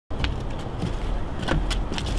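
Footsteps of two people walking on a wooden footbridge, shoes thudding on the planks and scuffing dry fallen leaves, about six steps in two seconds. A steady low rumble runs underneath.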